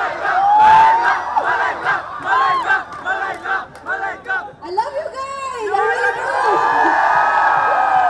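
A large crowd shouting and cheering with many overlapping voices, building into a long, loud massed shout near the end.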